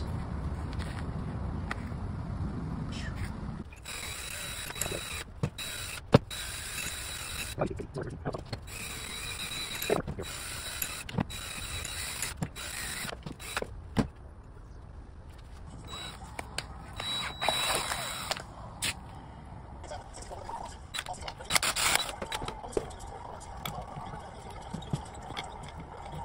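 Irregular clicks, scrapes and knocks of metal parts being handled on a workbench: the armature and brush plate of a Yamaha G29 golf cart's 48-volt brushed DC motor being worked on by hand, over a steady hiss.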